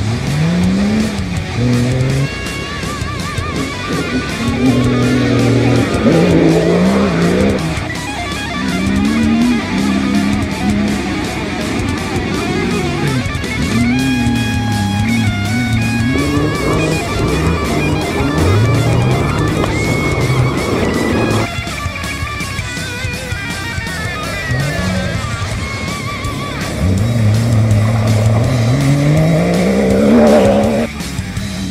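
Mitsubishi Pajero rally car's engine revving hard, its pitch climbing and dropping again and again through gear changes as it drives through the corners, mixed with background music with guitar.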